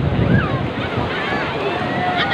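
Sea surf washing on the beach with wind rumbling on the microphone, the rumble heaviest in the first half second.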